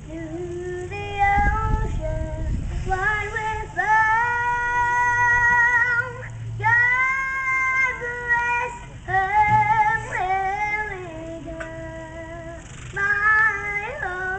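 A young girl singing solo, holding long notes in a slow melody.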